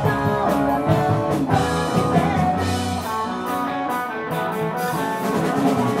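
Live rock band playing: electric guitar, electric bass and drum kit, with drum hits at a steady beat.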